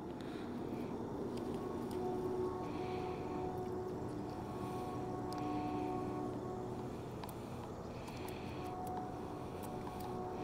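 A steady low mechanical hum with faint, even pitched tones that fade in and out, over a constant background rush.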